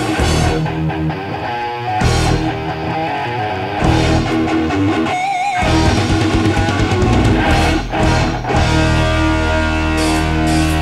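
Instrumental rock passage led by electric guitar over bass and drums. About halfway through the low end drops out briefly and a single wavering note is held before the full band comes back in.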